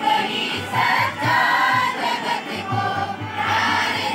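A prayer song sung by a group of voices in unison, with a hand drum beating along underneath.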